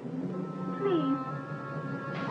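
Eerie horror-film soundtrack: sustained droning music tones with a short, falling, wail-like call laid over them, plaintive like a moan or a cat's meow.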